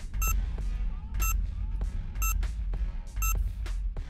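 Quiz countdown timer beeping: four short, high electronic beeps, one a second, over background music with a steady low beat.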